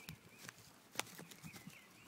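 Faint woodland background with a bird chirping quietly, short calls that rise and fall. A single sharp click comes about a second in.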